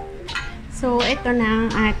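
A ceramic plate knocking and clinking a few times as it is picked up, followed by a woman's voice holding drawn-out, wavering notes for about a second.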